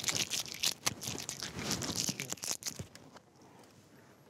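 Clear Scotch tape being pulled off and torn, a dense crackling rasp that dies away about three seconds in.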